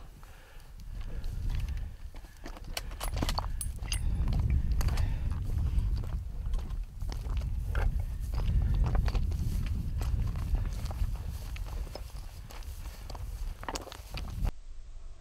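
Footsteps of people walking quickly through dry grass and over stony ground: irregular crunches, scuffs and clicks of boots on stones and brush. Under them runs a strong low rumble of wind buffeting a moving handheld microphone.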